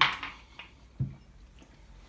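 A sharp breath out right after a sip of straight gin, fading quickly, then about a second in a single low thud as the glass is set down on the table.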